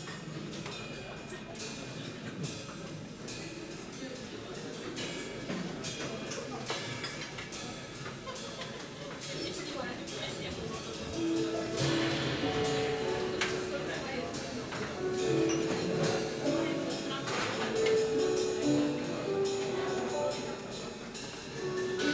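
A live band playing softly: sparse soft ticks for the first half, then about halfway through a keyboard starts a melody of short mid-pitched notes that steps up and down.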